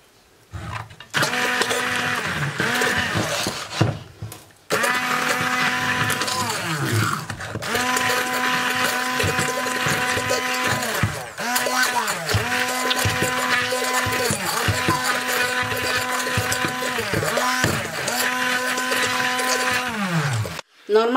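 Hand-held immersion blender whirring as it purées a creamy sauce in a frying pan. It switches on about a second in, cuts out briefly around four seconds, then runs in long spells whose pitch sags briefly between them, stopping at the end.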